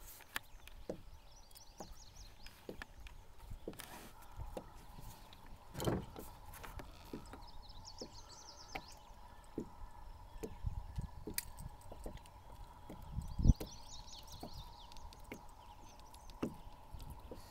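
Faint clicks and knocks of a freshly caught bass being handled and a lure's hooks being worked out of its mouth in an aluminum boat, with one louder knock against the hull about two-thirds of the way through. A bird sings a short high phrase three times in the background.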